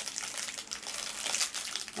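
Clear plastic packaging crinkling softly as it is handled, a light continuous rustle with small crackles.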